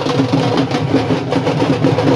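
Fast, continuous drumming with steady held musical notes over it.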